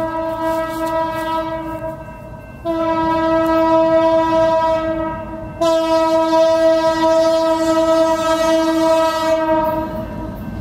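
Diesel locomotive horn sounding for a grade crossing as the train approaches: three long, steady blasts, broken by a short gap about two seconds in and a brief break about five and a half seconds in. It is louder after the first break.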